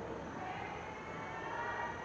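Pause in speech with only faint, steady background noise and a faint hum.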